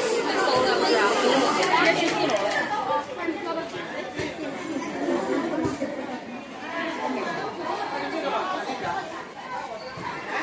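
Indistinct chatter of several people talking at once in a large, echoing indoor market hall, loudest in the first three seconds. A couple of light knocks sound in the middle.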